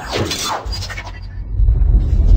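A glass-shattering sound effect hits at the start, with falling sweeps, over intro music. Heavy bass-driven music swells in near the end.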